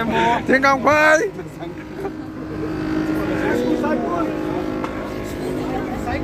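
A bus engine hums steadily, heard from inside the passenger cabin, under passengers' voices. A loud voice calls out about a second in, and quieter chatter follows.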